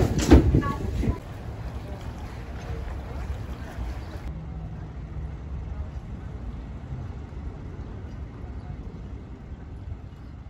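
A voice for the first second, then a low, steady rumble with wind noise, like a ferry running with wind across the microphone; it turns duller about four seconds in.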